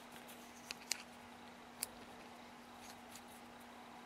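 A few faint, small metallic clicks as steel bar nuts are threaded by hand onto a Stihl chainsaw bar stud, the sharpest a little under two seconds in, over a faint steady hum.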